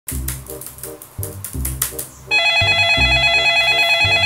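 Upbeat background music with a plucked bass line; a little over two seconds in, a corded desk telephone starts ringing with a loud electronic trilling ring over the music.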